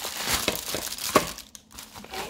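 Plastic mailer bag and plastic wrapping crinkling as they are handled and opened, with a sharp crackle just over a second in, then quieter.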